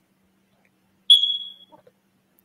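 A single high-pitched electronic beep about a second in, starting sharply and fading out over about half a second.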